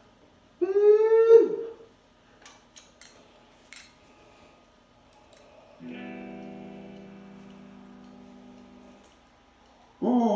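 A short, loud, voice-like whoop that rises then falls about a second in, a few faint clicks, then a guitar chord struck about six seconds in and left to ring out, fading over about three seconds, as a song's intro.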